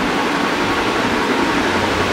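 Steady, even hiss of background noise, with no clear single event in it.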